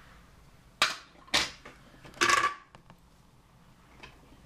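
Three sharp knocks of hard objects being handled close to the microphone, starting about a second in, the last a short clatter.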